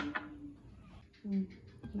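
A glass tumbler set down on a stone countertop with a sharp clink, followed about a second later by a short voiced hum.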